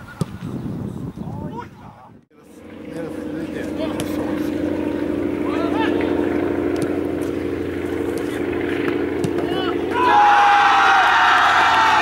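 Outdoor football match sound: a steady low drone with scattered distant voices through most of it. About ten seconds in, it turns to louder shouting from players and spectators as the attack reaches the goal.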